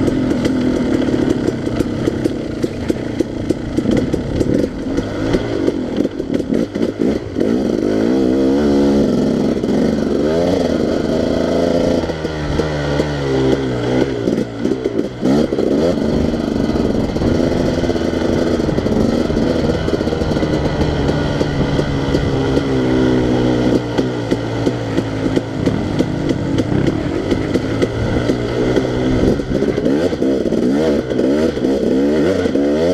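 Dirt bike engine ridden hard along a trail, its pitch climbing and dropping over and over with throttle and gear changes. Short knocks and clatter come through from the rough ground.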